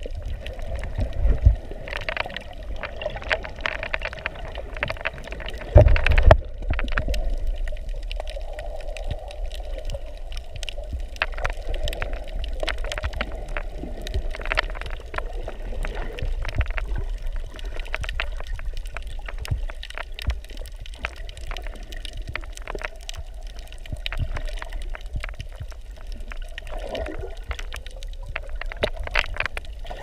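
Underwater noise picked up by a submerged camera over a coral reef: a steady, muffled water sound with a low rumble and scattered sharp clicks and crackles. Two heavy low thumps stand out, one near the start and one about six seconds in.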